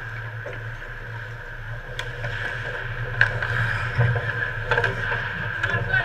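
Ice hockey play around the net: skates scraping the ice and sharp clacks of sticks and puck, getting busier and louder from about halfway through as players close in on the goal, over a steady background hum.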